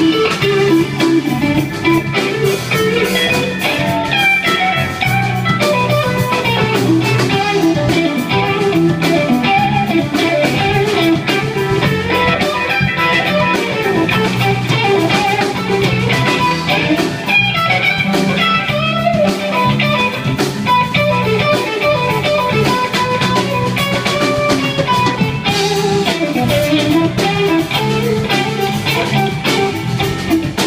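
Live band playing a blues-rock number: electric guitar leads with a winding melody over drum kit, bass and keyboard.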